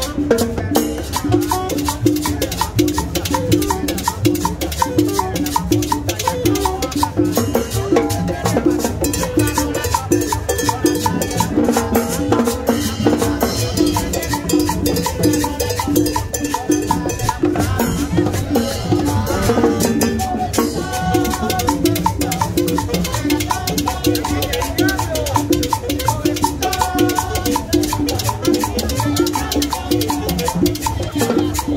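Live salsa from a small street band: timbales and congas drive a steady, busy beat under a saxophone melody.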